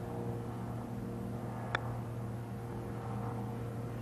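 A golf club striking the ball on a short chip shot: one sharp click about halfway through. It sits over a steady low hum.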